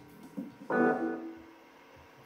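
A single keyboard note struck about two thirds of a second in, ringing and fading away over under a second, in an otherwise quiet pause.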